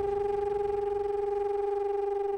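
Background music: one sustained electronic tone held at a steady pitch.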